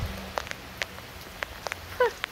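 Rain falling steadily, with a few separate drops ticking sharply now and then.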